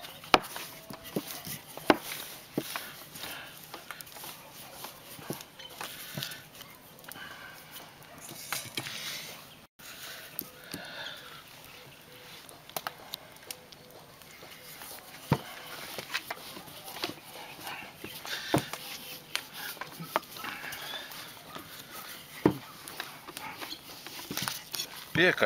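Wooden rolling pin rolling out thin lavash dough on a flour-dusted table, with a few sharp knocks scattered through.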